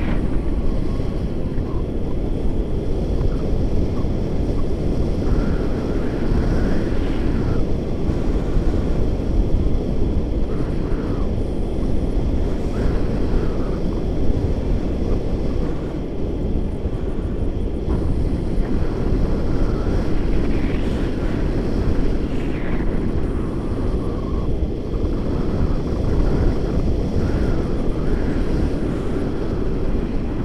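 Airflow of a tandem paraglider in flight buffeting an action camera's microphone: a steady, deep rushing of wind noise. A few faint higher sounds come and go over it.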